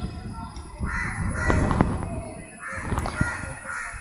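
A crow cawing twice in the background: two harsh calls, about a second in and again near three seconds.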